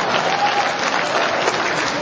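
Audience applauding: steady clapping from many hands.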